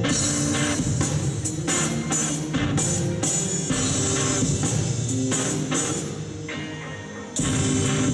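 Live rock band playing an instrumental passage on electric guitars, bass guitar and drum kit. Near the end the band drops back for about a second and a half, then comes back in suddenly at full volume.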